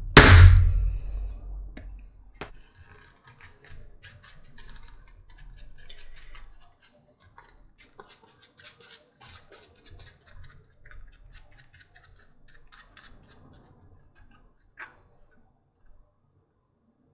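One hard strike just after the start, a mallet on a metal setter fixing the belt clip to the leather, dying away over about two seconds. After it come faint scattered clicks and scratches of the leather, the glue can and brush being handled.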